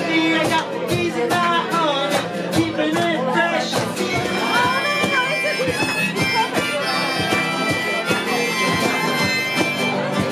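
Live acoustic music: strummed acoustic guitars under a lead melody that bends and slides in pitch.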